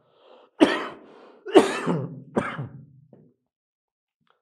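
A man coughing three times, about a second apart, clearing his throat.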